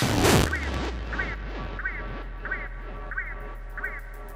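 Psytrance track going into a breakdown. After a crash-like sweep at the start the kick drum drops out, leaving a low steady bass drone and a short high synth blip that repeats about twice a second, fading slowly.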